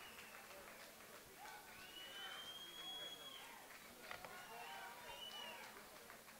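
Faint, indistinct voices of people milling about in a large hall, with no clear words.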